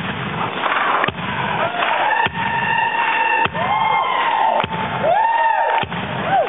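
Live blues band: a guitar playing sliding notes that glide up and back down over a held note, with a sharp drum hit about every 1.2 seconds. Each hit briefly ducks the whole sound, as on a camcorder's overloaded microphone, and the sound is dull, with little treble.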